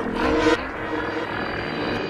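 Breakdown in a drum and bass track: the drums drop out, leaving a sustained dark synth texture. A short pitched sound opens it, and the high frequencies cut away about half a second in.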